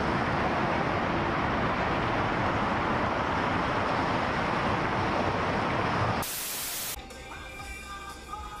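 Steady rushing noise of traffic on a wet highway for about six seconds. It breaks into a short burst of static-like hiss, and then music starts near the end.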